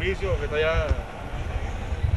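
A man's voice for about the first second, then a steady low rumble from the launch's motor under way, mixed with wind on the microphone.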